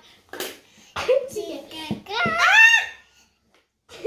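A young child's voice: a few short wordless vocal sounds, then a loud, high-pitched cry about two seconds in that rises and falls in pitch.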